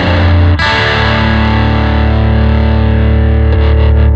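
Distorted electric guitar holding a ringing chord, with a new chord struck about half a second in and left to sustain.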